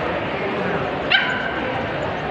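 A small dog gives one high yip about a second in, held briefly as a whine.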